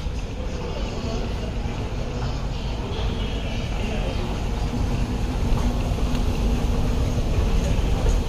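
Airport terminal ambience: a steady low rumble under faint, indistinct voices, slowly growing louder toward the end.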